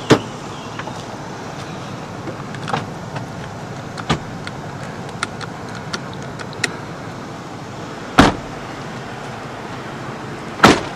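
Doors of a 1996 Buick Roadmaster wagon being handled: scattered sharp clicks and knocks of handles and latches, with a loud door thud about eight seconds in.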